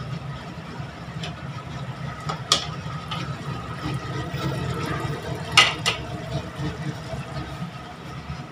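Mutton curry simmering in a steel wok over a gas burner, with a steady low hum underneath. A metal utensil clinks against the wok three times, once a few seconds in and twice close together past the middle.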